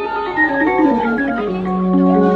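Live band's electronic organ sound on keyboard holding sustained chords, settling into one long held chord about halfway through, with a brief voice over it about half a second in.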